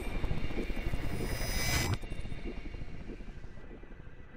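Logo-reveal sound effect: a dense rumbling whoosh that ends in a sharp hit about two seconds in, followed by a long fading tail.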